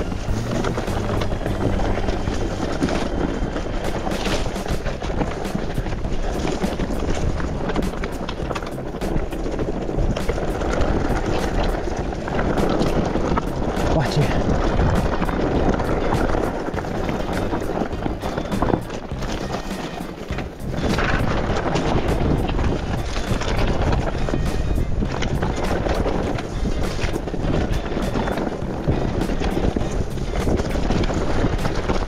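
Background music over the ride noise of an e-mountain bike descending a rough dirt trail, with frequent clicks and knocks from the bike over bumps throughout.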